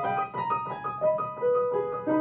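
Yamaha upright piano played solo: a quick succession of single notes, each struck and left ringing, in a fast-moving classical passage.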